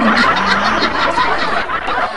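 Laughter from several people at once, a burst of laughing in a radio comedy.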